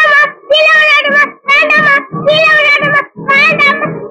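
A girl's high singing voice in an Indian film song, sung in short phrases of wavering held notes with brief breaths between them, over a light instrumental backing.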